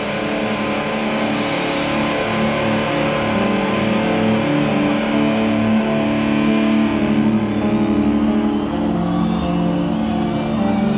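Distorted electric guitar and bass holding a sustained, droning chord with no drums, in a heavy metal song played live. The held notes ring on evenly and shift to new pitches about nine seconds in.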